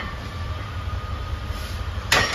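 Steady low rumble and hum of gym room noise, with a faint steady high tone running through it. No clank of the weights or other distinct event.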